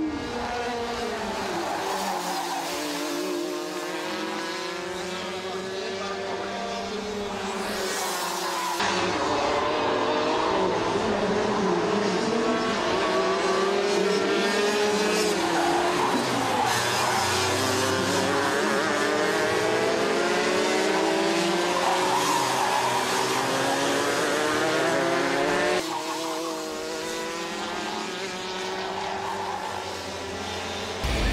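Several racing kart engines, two-stroke, revving up and down as the karts accelerate out of corners and lift off into them, their pitches overlapping and gliding. Louder from about nine seconds in until near the end.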